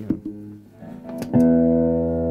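A 1965 Gibson SG Junior electric guitar played through an amplifier: a few short picked notes, then about one and a half seconds in a loud chord struck and left ringing, with a crunch channel's light overdrive.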